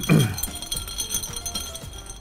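Ice clinking against a tall glass as a cocktail is stirred with a straw, over quiet background music.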